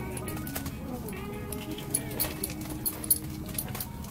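Scattered small clicks and taps from fishing tackle being handled, over faint background music.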